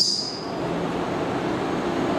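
A steady, even background noise with no distinct events, filling a pause in a man's speech. His last sound trails off as a fading hiss within the first half second.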